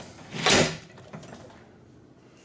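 Hotel balcony door with a lever handle being pulled shut: one sharp whoosh and bang about half a second in, then a faint click of the latch or handle.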